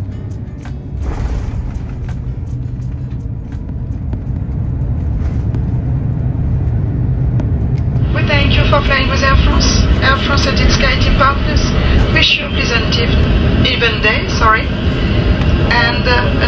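Airbus A350-900 landing roll: a deep, steady rumble of the airliner on the runway, heard from inside the cabin and growing louder over the first half. From about eight seconds in, a person's voice talks over the rumble.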